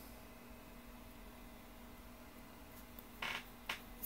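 Quiet room tone with a faint steady hum, then two short soft clicks about three seconds in, as a hand handles the tablet.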